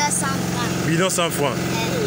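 A person's voice speaking briefly about a second in, over a steady low engine hum that runs throughout.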